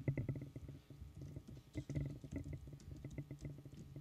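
Irregular soft clicks of a laptop keyboard being typed on, picked up through the podium microphone over a low steady hum.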